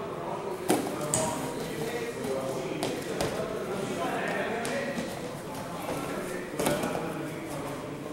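Grappling on gym mats: scuffling, with sharp thuds as bodies and feet hit the mat. The loudest thuds come about a second in and near the end, over voices in the background.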